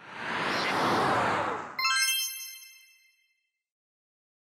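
Logo sting sound effect: a whoosh that swells up over about a second and a half, then a bright, many-toned chime near the two-second mark that rings out over about a second, then silence.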